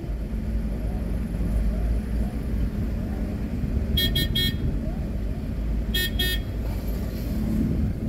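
Low steady rumble of a car and traffic, with a vehicle horn tooting in short beeps: three quick ones about halfway through and two more about two seconds later.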